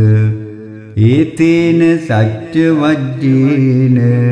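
A solo voice chanting Pali Buddhist protective verses in a slow, melodic recitation. A long held note fades away within the first second, and the chant picks up again about a second in with a rising, gliding phrase that is then held.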